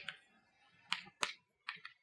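Chalk striking and tapping on a chalkboard as letters are written: four short, sharp clicks, a pair about a second in and another pair soon after.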